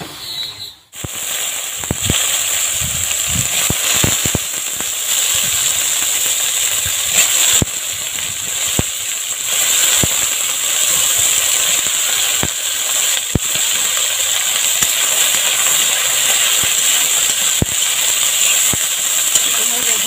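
Cubed eggplant going into hot mustard oil in a steel wok: a loud sizzle starts suddenly about a second in and keeps on evenly. Now and then the steel spatula clicks and scrapes against the wok as the pieces are stirred.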